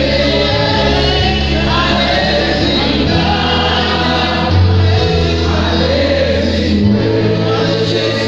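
Live gospel worship singing: lead singers on microphones with a group joining in, over an amplified band with held bass notes that change every second or so.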